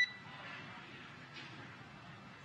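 A short electronic beep on the radio comm loop cuts off right at the start, leaving faint steady hiss on the open channel.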